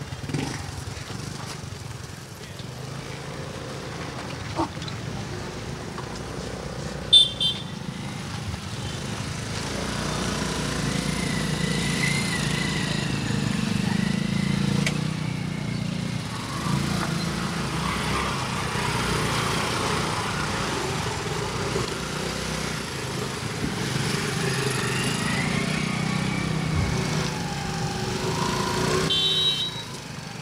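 Small motor scooters running at low speed as they edge past one after another, the engine sound swelling as they come close. A brief sharp click about seven seconds in.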